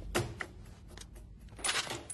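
A few sharp clicks in the film's soundtrack, followed near the end by a short rush of noise.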